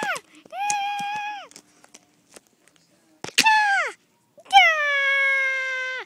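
A child's voice letting out three drawn-out, high-pitched play-acting cries. Each is held steady and drops in pitch at its end, and the last is the longest, at about a second and a half.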